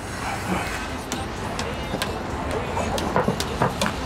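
Tangram Smart Rope skipping rope slapping a wooden deck and feet landing as someone jumps rope. There is a sharp tap every half second or so from about a second in, over a steady background hiss.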